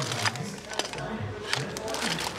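Plastic zip-top bag crinkling and rustling as it is handled, with a few sharp crackles, over faint background music.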